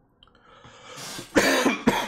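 A man draws a breath, then coughs twice into his fist, loudly, near the end.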